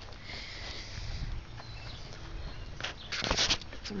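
Quiet outdoor background with a low steady hum and a brief rustle about three seconds in.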